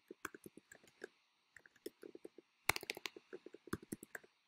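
Typing on a computer keyboard: a run of quick, light key clicks, with a short pause about a second in and a faster, louder flurry a little before three seconds in.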